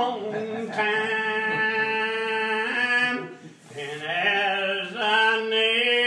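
A man singing a gospel hymn without accompaniment, in slow, drawn-out held notes, with a breath break about three seconds in.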